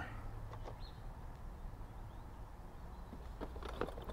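Quiet low hum with a few faint clicks as a Husqvarna Automower 115H robotic mower reverses slowly onto its charging station, its cutting blades not running.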